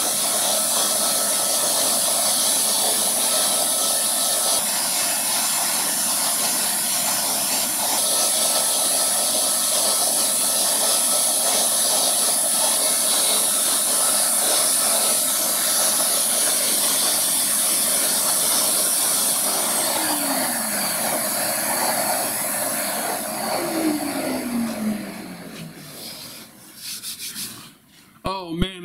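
Shaper Origin handheld CNC router running with a steady high-pitched whine while its bit engraves a butterfly outline into a wood panel. About two-thirds of the way through the whine falls away, and over the last few seconds the sound winds down as the router stops.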